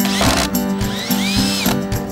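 Acoustic guitar background music with a short noisy swish near the start and a few curved gliding tones about a second in: an editing transition sound effect.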